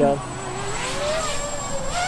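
Eachine Trashcan tiny whoop FPV drone's motors and ducted propellers whining as it lifts off, the pitch rising over the first second and then holding.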